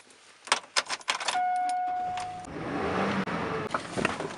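Keys jangling and clicking in a pickup truck's steering-column ignition, then a steady warning chime for about a second. Then the engine cranks and starts, running on at a steady idle.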